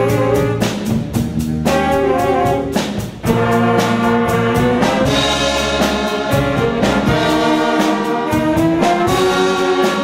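Student jazz big band playing: trumpets, trombones and saxophones in held chords over a steady beat of regular cymbal and drum strokes. There is a brief break about three seconds in, then the full band comes back in.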